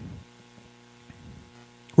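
Faint, steady electrical hum on a telephone line, a buzz of several even tones held without change between the talkers' words.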